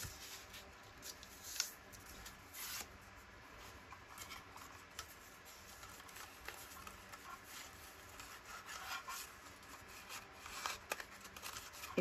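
Faint rustling and sliding of a paper strip being handled and fed into a plastic handheld file-tab punch, with a few light clicks and taps.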